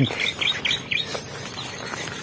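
A small bird chirping: a quick series of about six short high chirps in the first second, over a rustle of leaves and vines being brushed past.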